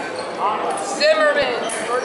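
Background voices of people talking, with a single dull thump about halfway through.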